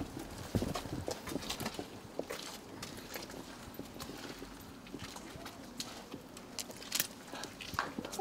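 A mussel-detection dog searching around a trailered boat: irregular soft clicks and scuffs of its paws and claws on pavement, mixed with sniffing.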